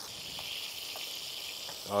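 Brioche bun, its cut face spread with mayonnaise, sizzling in hot oil in a cast iron skillet: a steady, high hiss.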